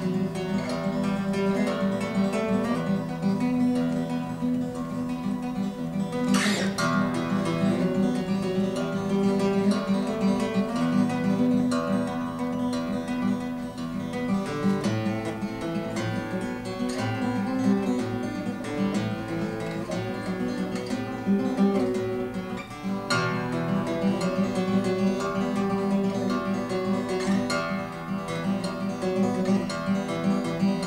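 Solo acoustic guitar playing an instrumental tune, notes ringing on continuously, with a few hard strummed accents: a strong one about six seconds in and another about twenty-three seconds in.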